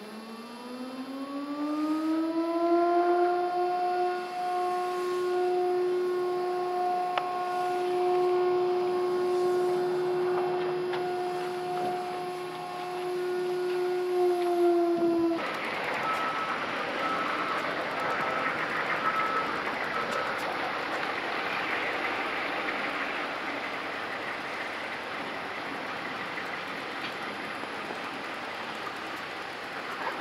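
A machine winds up over about three seconds to a steady whine and holds that pitch, then cuts off suddenly about halfway through. A steady rushing noise follows.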